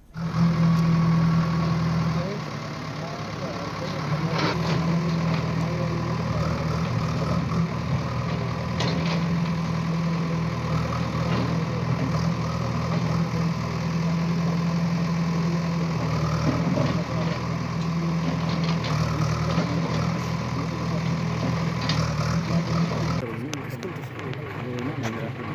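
Backhoe loader's diesel engine running steadily with a low, even hum, with a few sharp knocks now and then.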